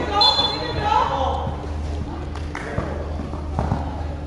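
Loud shouted voices in the first second or so, then a basketball bounced several times on a tiled sport court during play.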